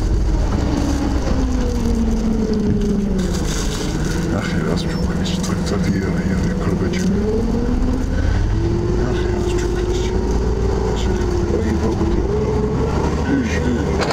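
Car engine running, heard from inside the cabin, its note slowly falling and then rising again over several seconds above a steady low rumble.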